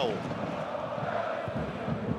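Steady crowd noise from a packed football stadium.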